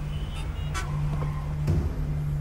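A car engine running steadily, with two short sounds about a second in and near the end, under quiet background music.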